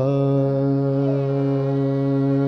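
A male ghazal singer holding one long, steady sung note over soft instrumental accompaniment.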